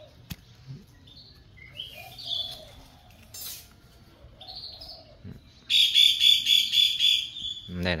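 Birds chirping in short high calls, then about two-thirds of the way in a loud, rapid series of repeated high notes, about five a second, for roughly two seconds.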